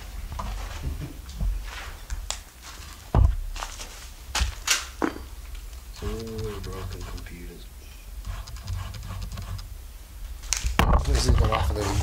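Footsteps and handling noise over a debris-strewn floor, with scattered clicks and knocks, the loudest a sharp knock about three seconds in. Brief low voices murmur in the middle and again near the end.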